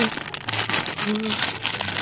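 Thin plastic bag crinkling and rustling in irregular crackles as hands pull it open, with brief short voice sounds in between.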